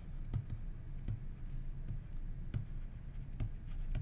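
Pen stylus tapping and scratching on a tablet surface while handwriting, heard as a series of light, irregular clicks.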